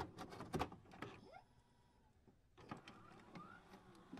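Faint glitchy loading-screen sound effects: scattered clicks with a few short rising whirs, dropping out briefly in the middle.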